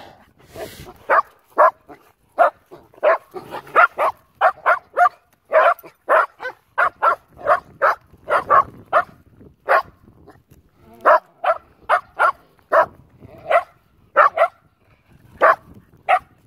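Dogs barking in play: many short, sharp barks in quick, irregular runs, with a couple of brief lulls.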